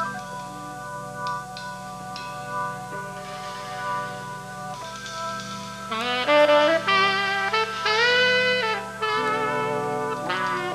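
Live band playing a slow song intro: held chords, then a saxophone comes in about six seconds in, louder, playing a melody with bent and held notes.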